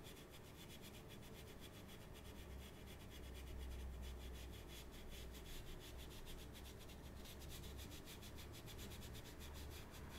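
Faint scratchy rubbing of an ink-loaded paintbrush dragging across textured paper, over a low hum.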